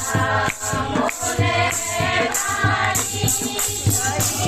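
A group of women singing a batuk geet, a folk song of the janeu (sacred-thread) ceremony, together in unison. A dholak drum beats a steady rhythm under them, with jingling metal percussion.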